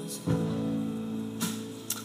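Live band playing a quiet instrumental passage between sung lines, guitar chords ringing over the band; a new chord comes in about a quarter second in.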